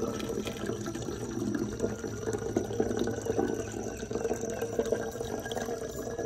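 Hummingbird nectar pouring in a steady trickle from a bag's spout into a glass feeder jar as it fills.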